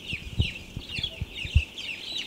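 A flock of young broiler chicks peeping: many short, falling chirps overlapping without a break. Two soft low thumps come about half a second and a second and a half in.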